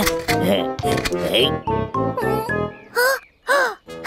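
Wordless, high cartoon-character voices, squeaky babble and squeals, over children's background music. About three seconds in come two short calls, each rising and then falling in pitch.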